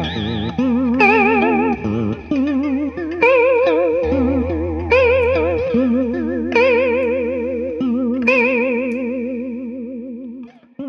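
Electric guitar played through an EarthQuaker Devices Aqueduct vibrato pedal: notes and chords are struck about every second and a half and left to ring, their pitch wobbling up and down quickly and deeply. The sound fades near the end.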